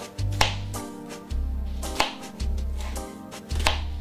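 Kitchen knife slicing a peeled onion on a plastic cutting board: a few sharp knocks of the blade on the board, with softer cuts between them. Background music with a bass line plays underneath.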